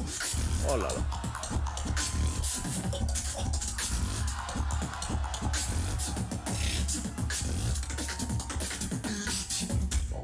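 Live competition beatboxing through a PA system: a heavy, steady bass line under rapid percussive clicks and snare-like hits.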